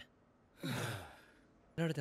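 A person's single breathy sigh, the voice falling in pitch and lasting under a second. Speech starts near the end.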